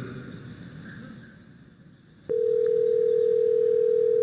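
Telephone ringback tone: a single steady ring lasting about two seconds, starting a little over two seconds in. It is the sound of an outgoing call ringing at the other end, still unanswered.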